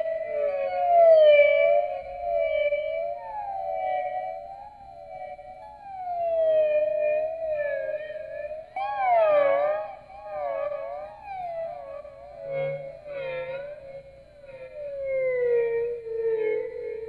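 Electric guitar played through effects, holding a sustained, theremin-like tone that wavers and glides up and down in pitch, with echoing overlapping lines. It swells louder about a second in, again around nine seconds, and near the end.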